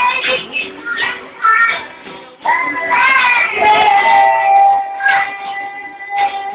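A man singing to his own strummed acoustic guitar, with a long held note about halfway through.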